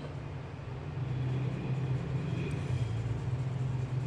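A steady low rumble that gets louder about a second in.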